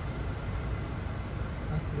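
Steady low rumble of a car's engine and road noise heard from inside the cabin, with a voice starting near the end.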